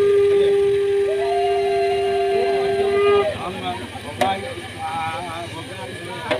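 Two long steady blown horn notes held together, the lower one sounding at once and a higher one joining about a second in; both stop together about three seconds in, leaving voices.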